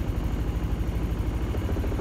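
2012 Suzuki Burgman 400 scooter's liquid-cooled, fuel-injected single-cylinder engine idling with a steady, even pulse.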